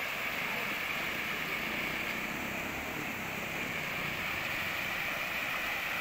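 Steady rushing of a river in flood, fast brown floodwater pouring through the broken piles of a wooden bridge.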